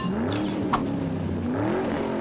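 Car engine revving as a sound effect in an animated logo intro, the pitch climbing twice, with a brief whoosh about half a second in.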